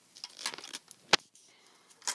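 A coin being worked into the coin slot of a Lego-brick candy machine: a few light plastic clicks and taps, then one sharp click a little over a second in.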